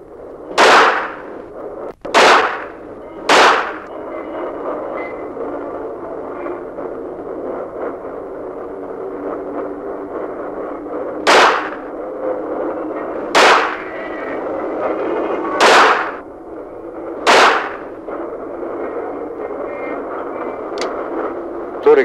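Seven single gunshots fired at a paper bullseye target: three within the first few seconds, then a pause, then four more spaced about two seconds apart. They sound over a steady background noise.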